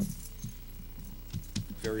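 A short lull in a studio conversation: faint, light clinks and handling noises from things moved on a table, over a steady low hum. A man's voice starts again near the end.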